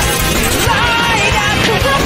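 Loud music: a rave.dj mashup track, a dense mix with a wavering melodic line.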